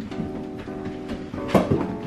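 Background music: a light instrumental with plucked string notes, repeating about twice a second, and a brief sharp knock near the end.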